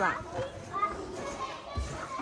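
Children's voices and play noise echoing in an indoor play hall, with a few low thumps near the end.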